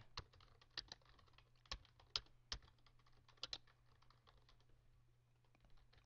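Faint computer-keyboard typing: irregular keystroke clicks, more of them in the first few seconds than later, over a faint steady low hum.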